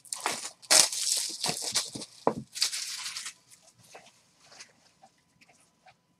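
Crinkling and tearing of plastic wrap as a trading-card box is unwrapped by hand, in a few loud bursts over the first three seconds, then fainter rustling.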